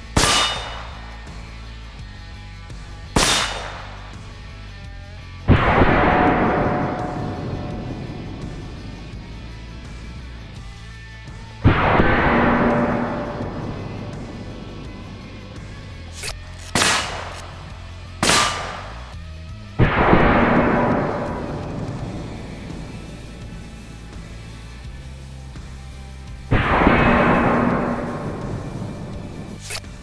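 Single shots from a suppressed AR-style carbine, eight or so sharp cracks spaced irregularly. Four of them are followed by a long fading boom that dies away over several seconds. A low music bed runs underneath.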